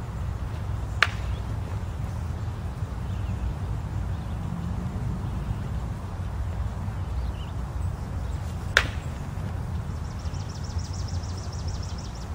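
Two sharp clacks of practice broadsword blades meeting, one about a second in and one near the end, over a steady low outdoor rumble.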